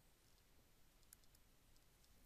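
Near silence: room tone with a few very faint clicks about a second in.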